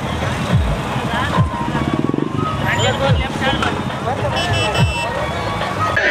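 Several motorcycles running in a procession, their engines rising and falling in pitch again and again, with people's voices over them.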